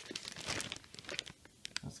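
Clear plastic bag crinkling as it is handled, a run of quick, sharp crackles.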